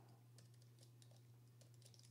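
Faint computer keyboard typing: scattered quick key clicks, over a steady low hum.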